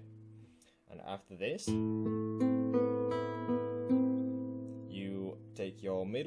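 Nylon-string flamenco guitar played fingerstyle: a slow arpeggio of single plucked notes, the thumb starting on the fifth string and the fingers working up through the strings, each note left ringing over the next.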